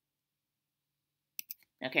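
Two quick sharp clicks close together about one and a half seconds in, computer clicks advancing presentation slides, with dead silence before them.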